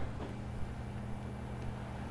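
Room tone in a pause between speech: a steady low hum with faint hiss.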